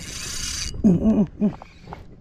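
Spinning reel's drag buzzing briefly as a hooked fish pulls line off, cutting off under a second in. A man's short voiced exclamations follow.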